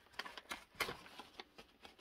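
Paper being unfolded and handled, giving a run of light, faint crackles and rustles that thin out toward the end.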